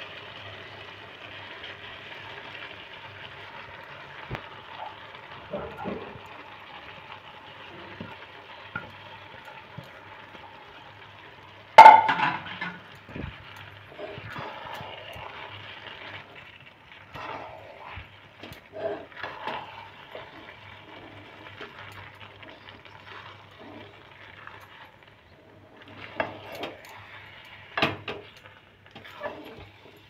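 Sago pearls being tipped into a metal wok of dal and vegetables and stirred in with a spatula: scattered scrapes and light knocks on the pan over a steady faint hiss. One sharp, loud knock about twelve seconds in.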